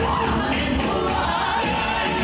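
Female vocal group singing a song in harmony into microphones, amplified, over instrumental accompaniment.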